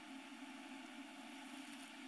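Faint, steady hiss with a low hum: room tone and recording noise, with no distinct sound event.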